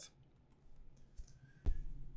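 A single sharp click about one and a half seconds in, made as the presentation slide is advanced, over quiet room tone.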